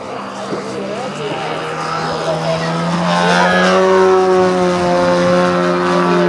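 3W two-stroke petrol engine of a large-scale RC Pitts Special biplane running at high throttle in flight. It grows louder over the first few seconds, and its pitch sinks slightly from about halfway through.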